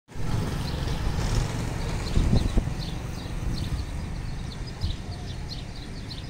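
Outdoor ambience: a steady low rumble with a couple of knocks a little over two seconds in, under small birds chirping in short, high, repeated notes.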